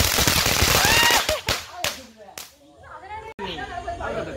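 A poothiri (flowerpot firework fountain) hissing loudly as it sprays sparks for about the first second, then dying away into a few sharp crackling pops.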